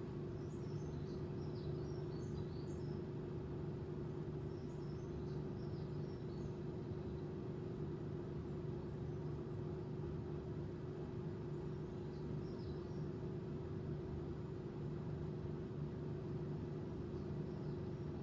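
Steady low indoor hum, like an appliance or fan running. A few faint high chirps come through in the first few seconds and once more past the middle.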